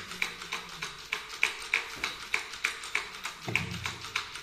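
Wooden hand-held divination chair knocking on a wooden altar table in a steady rhythm of about three knocks a second, each knock with a short bright ring.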